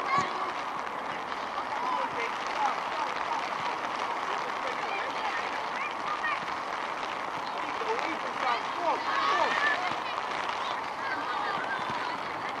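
Distant shouts and calls of youth footballers and touchline spectators across a football pitch, short scattered cries over a steady background hiss.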